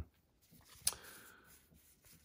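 Trading cards being handled: a faint rustle and one sharp tap a little under a second in.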